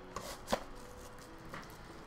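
Two short, light knocks of things being handled on a desk, a faint one followed about a third of a second later by a louder one, over a faint steady hum.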